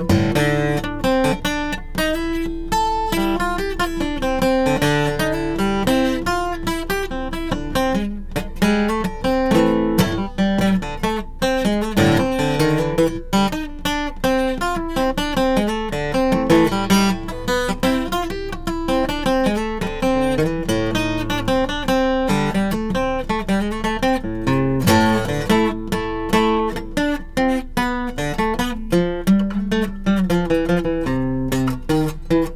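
Acoustic guitar played without pause: a quick stream of single notes walking up and down the strings in A minor, with some chords mixed in.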